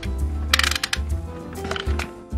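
Utility knife blade being slid out of its handle: a rapid run of ratchet clicks lasting about a third of a second, about half a second in. Background music with a steady beat underneath.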